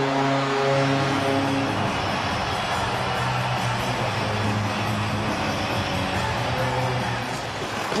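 Arena music playing over the public address for a home-team goal, with held notes that change about two seconds in, over steady crowd noise.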